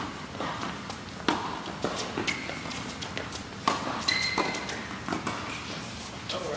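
Tennis balls struck by racquets and bouncing on an indoor hard court: several sharp pops a second or two apart, echoing in the hall, with a couple of brief high squeaks of shoes on the court.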